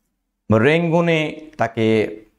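Speech only: a man talking in Bengali, starting after a half-second pause.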